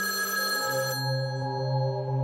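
An old rotary telephone ringing, its ring cutting off about a second in, over a low, steady ambient music drone.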